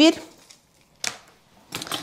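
Light handling of paper pattern pieces on a cutting mat, with a short tap about a second in as a felt-tip marker is set down on the paper, and a few faint clicks near the end.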